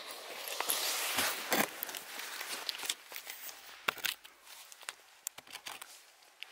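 Handling noise from a dropped camera: a close, dense rustle with several sharp knocks for about two seconds, then fainter scattered clicks and scuffs.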